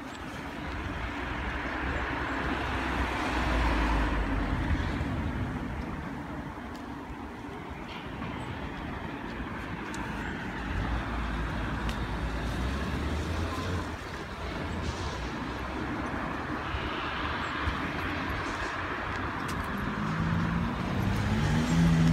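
Road traffic: cars driving past on a city street, the noise swelling and fading as they pass, loudest about four seconds in.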